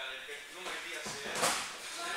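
A person thrown onto a wrestling mat lands with one sharp impact about one and a half seconds in, over voices in the hall.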